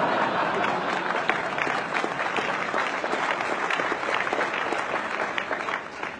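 A large audience applauding, a dense patter of many hands clapping that swells in just before the start and thins out near the end.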